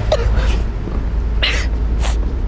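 A few short, breathy vocal bursts from a person, like gasps or coughs, the strongest about a second and a half in, over a steady low rumble.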